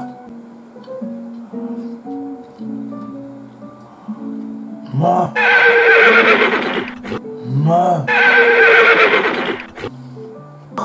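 Two horse whinnies, each about two seconds long, the first about five seconds in, edited in as a sound effect over soft background guitar music.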